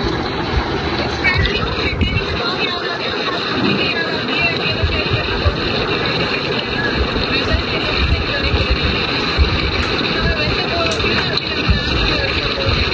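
Indistinct speech from the other end of a video call, played through a phone's speaker, over a steady, dense noise that lasts throughout.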